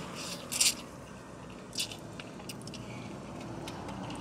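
Someone eating ramen noodles: a short slurp about half a second in and a smaller one near two seconds, then a few faint clicks, over a low steady hum.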